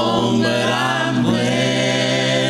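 A three-voice gospel group singing, holding one long sustained chord as a song ends.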